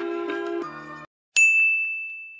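A short run of sustained musical notes cuts off into dead silence about a second in, followed by a single bright ding: one high pitch struck suddenly and ringing away over about a second, an edited-in sound effect.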